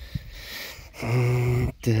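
A man's low voice holding one steady note, like a drawn-out hum, for most of a second about halfway in, then a drawn-out spoken 'так' starting near the end. Faint clicks of handling come before it.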